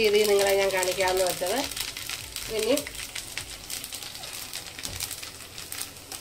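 Chopped ginger frying in oil in a nonstick wok: a steady crackling sizzle, stirred with a spatula. A voice speaks over it for the first second and a half and again briefly about halfway through.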